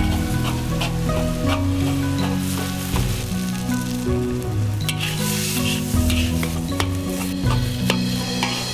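Chopped green chili peppers sizzling as they are stir-fried in a wok, with a metal spatula scraping and tapping against the pan now and then. Background music with slow, changing low notes plays underneath.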